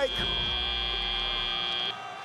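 FIRST Robotics Competition field's end-of-match buzzer: one steady, high-pitched tone that signals the match clock has run out, cutting off suddenly near the end.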